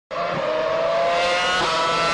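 Ferrari F10 Formula 1 car's 2.4-litre V8 running at high revs as it drives past, its high engine note rising steadily with a brief change in pitch about one and a half seconds in. The sound begins abruptly.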